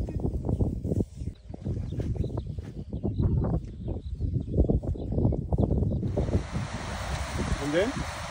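Uneven low rustling and wind buffeting on the microphone, then, about six seconds in, a steady hiss of rain starts suddenly and keeps going.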